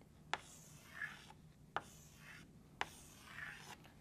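Chalk drawing circles on a blackboard, faint: soft scratchy strokes alternating with three sharp taps of the chalk against the board.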